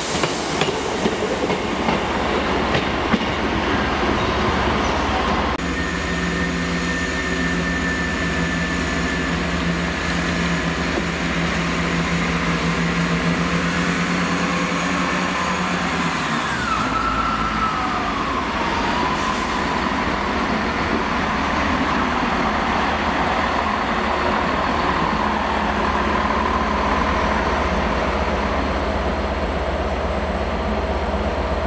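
Diesel multiple-unit passenger trains running along the station tracks: a steady engine and rail drone with wheel noise, a held hum through the middle, and a whine that falls in pitch about two-thirds of the way through as a unit slows.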